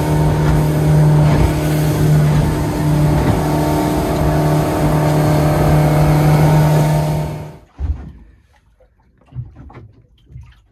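Suzuki outboard motor running steadily at cruising speed as the boat planes, a constant drone over the rush of water and wind. It cuts off abruptly about three-quarters of the way through, leaving faint small knocks and splashes.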